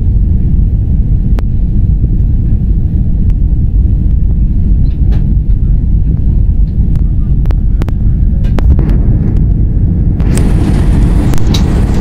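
Airliner cabin noise on descent: the loud, steady low rumble of the engines and airflow heard from inside the cabin, with a few faint clicks. A brighter hiss joins about ten seconds in.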